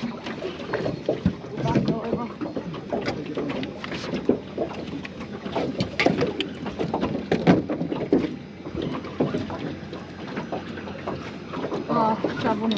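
Water slapping against the hull of a small anchored boat, with irregular knocks and clatter from fishing gear being handled on deck.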